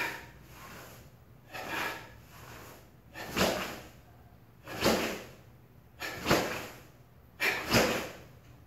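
Sharp, forceful exhalations by a karate practitioner, one with each punch, six of them at an even pace of about one every second and a half. Each breath is timed to the strike as part of tightening the body to deliver power.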